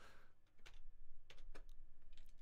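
Computer keyboard typing: a few scattered keystrokes over a low background hum.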